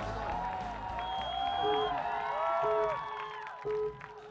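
Background show music with sustained and repeated notes, over a stadium crowd cheering and clapping, dropping off just before the end.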